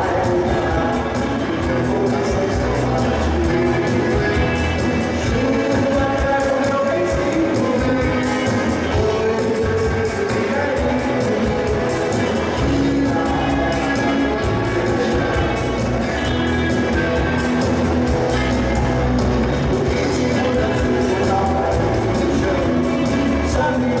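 Live band playing a Jovem Guarda-style rock song, with strummed acoustic guitars, electric guitar, keyboard and drums, at a steady loud level.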